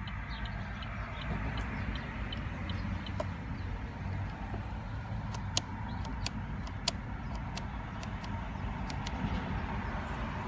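The 1.4-litre turbocharged four-cylinder of a 2015 Chevrolet Cruze idling, heard from inside the cabin as a steady low hum. A few sharp clicks from the stalk's menu buttons being pressed come mostly in the second half.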